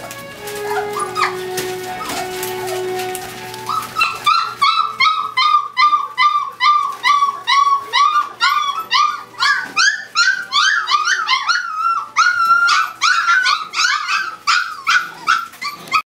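Background music, then from about four seconds in, Weimaraner puppies yelping in short, high, repeated cries, two or three a second.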